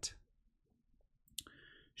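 Near silence in a pause in a man's speech, broken about a second and a half in by one short, sharp click and a faint breath-like noise just before he speaks again.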